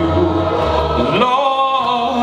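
Church congregation singing a slow hymn a cappella in several voice parts. About a second in, the voices rise together into a held chord.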